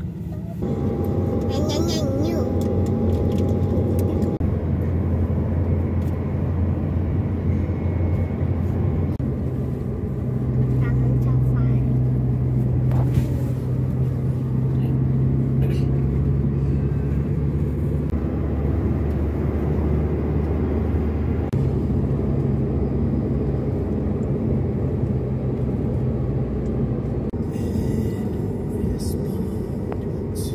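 Engine and tyre drone heard from inside the cabin of a moving car: a steady low hum whose pitch shifts up about ten seconds in.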